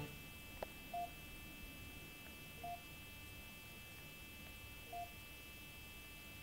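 Three short, faint electronic beeps from a Squeezebox Touch network music player, about a second in, near the middle and near the end, after a single light click near the start.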